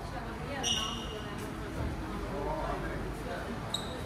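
Indistinct voices of passers-by and footsteps on a hard stone floor. A short high-pitched squeak comes under a second in, and a brief sharp ping comes near the end.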